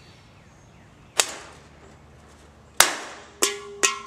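Four sharp slap-like impacts, the first two about a second and a half apart and the last two close together, each dying away quickly; a short steady tone sounds under the last two.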